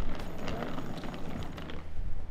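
Luggage being unloaded from a van's boot: a run of small clicks and rattles from bag handles, fittings and suitcase handling.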